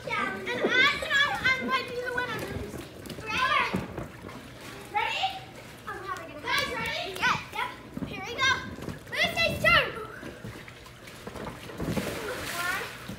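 Children's voices shouting and calling out in short high-pitched bursts during play in a swimming pool, with some water splashing.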